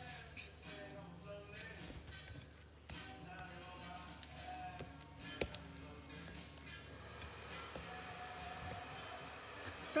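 Faint background music and distant voices, with a single sharp tap about five and a half seconds in.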